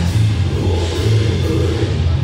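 Live death metal band playing at full volume: heavily distorted guitar and bass with a drum kit, a dense, bass-heavy wall of sound with cymbal crashes cutting through.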